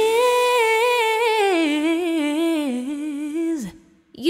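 A woman singing alone, unaccompanied: a rising entry into a held note, then a run of wavering ornaments that drifts down in pitch. The voice cuts off shortly before the end.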